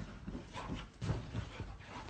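Golden retriever playing on a fabric sofa: irregular soft thumps as it bounces and lands on the cushions, with short dog vocal sounds among them.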